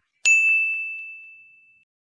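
Bell-like ding sound effect, struck once and fading out over about a second and a half.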